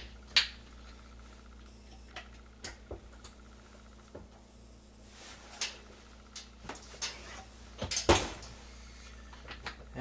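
Scattered light clicks and knocks of brass .223 cartridge cases being handled at a reloading press and set into a wooden loading block, with the loudest a short cluster of knocks about eight seconds in.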